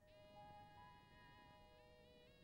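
Near silence, with faint sustained notes of a film's background music holding steady and shifting pitch once near the end.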